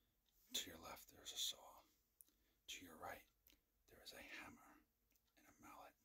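A man whispering close to the microphone in several short phrases with pauses between them.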